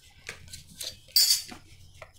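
A steel ruler and a marker pen being picked up and set down on a stone worktop: a few light clicks, then a louder, bright metallic clatter a little past one second in.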